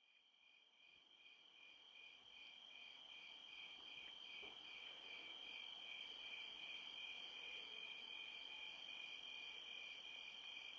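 Faint crickets chirping: a steady high trill with evenly pulsing chirps, two or three a second, over a soft hiss that fades up.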